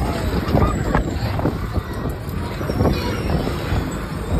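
Wind buffeting the microphone of a phone riding on a moving fairground ride: a loud, fluctuating low rumble of rushing air.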